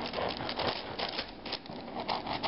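A knife sawing through a loaf of French bread, making irregular scratchy crunching as the blade cuts the crust.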